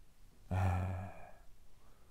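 A man's drawn-out hesitation sound, "eee", starting about half a second in, held at a steady low pitch for about a second and trailing off.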